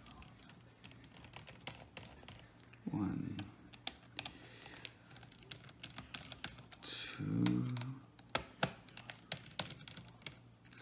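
Small screwdriver working tiny screws out of a laptop's metal frame, with a quick, irregular scatter of light metallic clicks and ticks as the tip engages, turns and the screws are lifted out.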